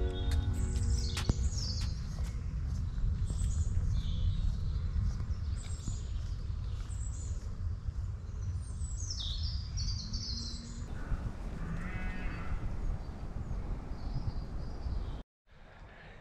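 Several small birds singing and chirping in woodland, with short falling trills, over a steady low rumble; a strain of music trails off in the first second. The sound cuts off suddenly near the end.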